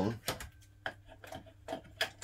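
A few light, scattered clicks and taps as a glass fluorescent tube is handled and pressed into the lampholder and housing of an old fluorescent light fixture.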